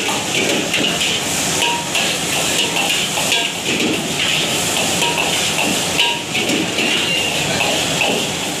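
Noodles stir-frying in a steel wok over a gas flame: continuous sizzling, with a metal ladle scraping and clinking against the wok.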